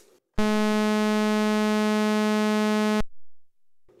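Raw sawtooth wave from VCO 2 of an ARP 2600 clone synthesizer: one steady, bright, buzzy note with no filtering. It starts about a third of a second in and stops abruptly about three seconds in.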